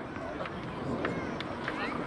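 Indistinct voices of players and spectators at an outdoor football ground: scattered calls and chatter with no clear words.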